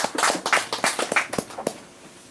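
Hand clapping: a brisk, fairly even run of claps at about five a second that stops shortly before the end.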